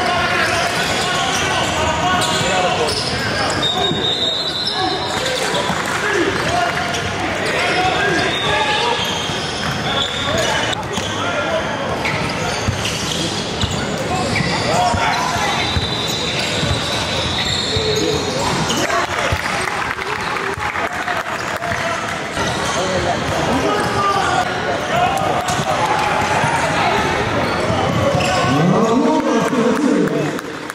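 Live basketball game in a gym: a ball bouncing on the hardwood floor, short high sneaker squeaks, and indistinct calls from players and onlookers, all echoing in the large hall.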